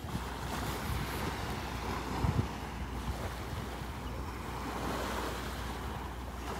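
Small, gentle waves washing up onto a shell-covered beach, a steady wash of surf mixed with wind on the microphone. A brief low bump comes a little over two seconds in.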